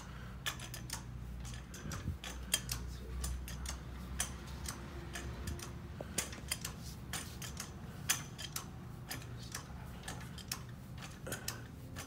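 Irregular light metallic clicks and ticks from handling a floor jack and its fittings under a truck's axle, over a low steady hum of shop machinery.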